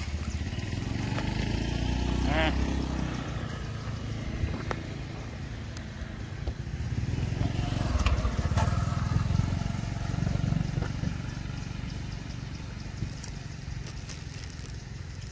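Passing road vehicles: an engine rumble swells and fades twice, with faint voices underneath.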